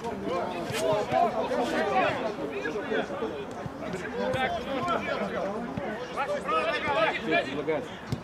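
Several men's voices talking and calling out at once, overlapping and indistinct, from football players on the pitch, with a few short knocks of the ball being kicked.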